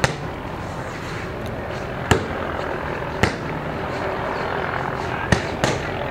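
Martial arts kicks smacking a hand-held kick pad: five sharp slaps, irregularly spaced one to two seconds apart, the last two close together. A steady murmur of background noise runs underneath.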